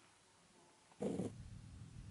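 A short sound about a second in, then a domestic tabby cat purring in a low, uneven rumble close to the microphone.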